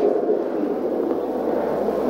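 Steady room tone through the microphone: an even hiss with a faint low hum underneath.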